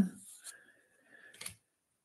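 Faint rub of stacked trading cards sliding against each other in the hands as one card is moved to the back of the pack, ending in a small click about a second and a half in.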